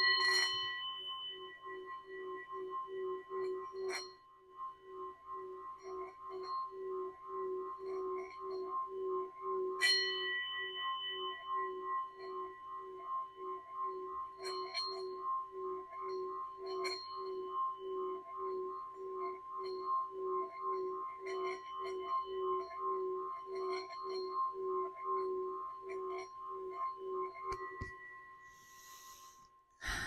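Metal singing bowl struck with a wooden mallet and then rimmed, ringing a steady wavering hum with higher overtones, with fresh strikes about 4 and 10 seconds in. The ringing dies away near the end.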